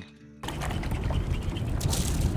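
Background music over outdoor ambience on the water, with wind rumbling on the microphone, starting about half a second in after a brief near-silent gap; a sharp click near the end.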